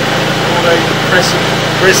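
An engine idling steadily, a low constant hum.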